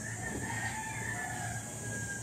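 A rooster crowing once, a long drawn-out call lasting about a second and a half.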